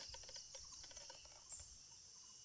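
Near silence, with faint insects chirring steadily in the background.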